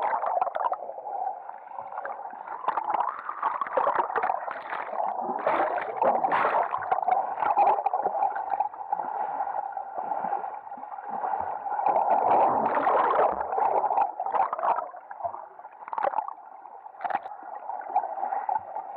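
Muffled water churning and bubbling heard from under the surface as a swimmer's arms stroke through the water in front crawl, swelling and fading with the strokes.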